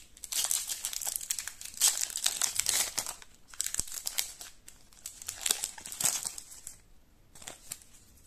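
Foil trading card pack crinkling and crackling as it is handled and torn open. The crinkling comes in a long spell over the first three seconds, then in shorter spells.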